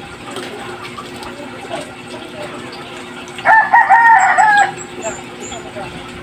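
A rooster crowing once, a single loud call of a little over a second that starts about three and a half seconds in, over a low steady background.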